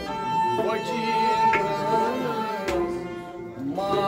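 Kashmiri sarangi being bowed, holding one long high note for about two seconds before the melody moves on, with hand-drum strokes underneath. A man's singing voice comes back in near the end.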